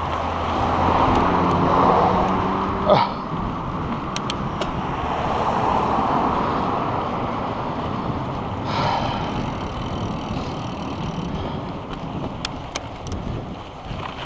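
Cars passing on the road beside a moving mountain bike, over a steady rush of wind on the microphone. The traffic noise swells loudest about one to two seconds in and again around six seconds. There are sharp clacks near three and near nine seconds.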